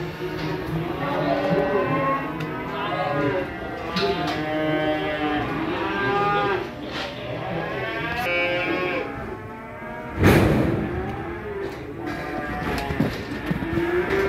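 Many cattle mooing and bawling at once, calls overlapping continuously, with one loud bang about ten seconds in.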